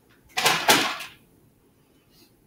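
A short burst of handling noise, under a second long, starting about a third of a second in.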